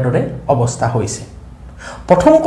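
A man speaking, trailing off about a second in, then a quick breath in near the end.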